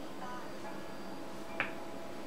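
A single sharp click about a second and a half in, over a steady background hiss.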